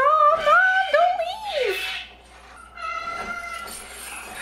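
Young dragon's cry, a TV sound effect: a high, wavering call that rises and falls for nearly two seconds, followed by a fainter, steady drawn-out tone near the end.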